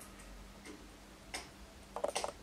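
Quiet room with a faint steady low hum and a few soft clicks.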